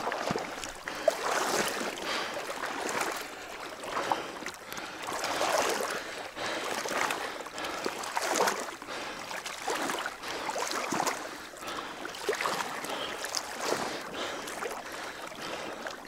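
A person wading through water, the water swishing and splashing around the legs with a swell at each stride, every second or two.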